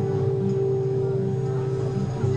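Acoustic guitars playing live, holding a steady ringing chord.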